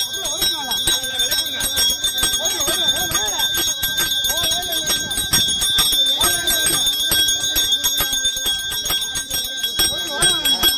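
A hand bell rung rapidly and without pause during a pooja, its strikes blending into one steady ringing, with crowd voices over it.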